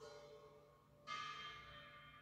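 Quiet passage of recorded music played through Elac BS 243.4 bookshelf speakers: a soft held note, then a single struck note about a second in that rings on and slowly fades.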